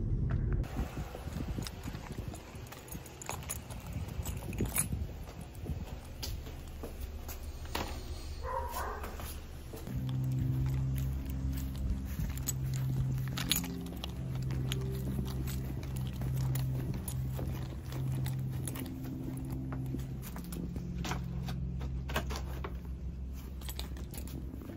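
Footsteps and small clicks, with keys jangling, while a bag of food is carried to a doorstep. From about ten seconds in, background music with a low bass line plays under them.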